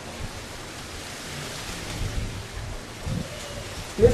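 Steady hiss of background noise with a few soft, low thumps about two and three seconds in.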